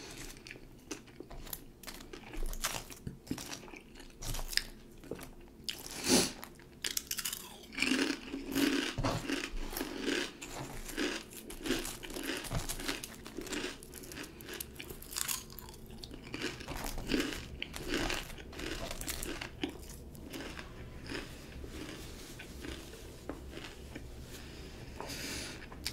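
Close-up chewing of crunchy jalapeño potato chips, an uneven run of crunches and crackles that is busiest in the middle stretch and thins out toward the end.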